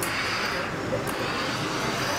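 Professional steam iron hissing as it releases steam while being pressed over fabric, the hiss swelling and easing.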